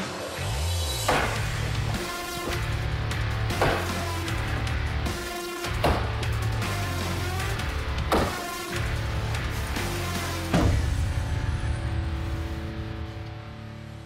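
Five chops of a knife blade into a road barrier, one sharp hit every two to two and a half seconds, over background music.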